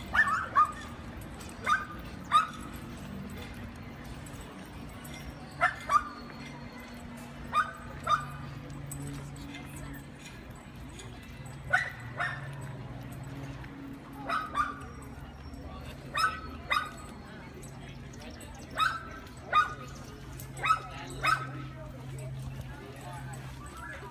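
A dog barking in short pairs, two quick barks about every two seconds, over a low steady hum.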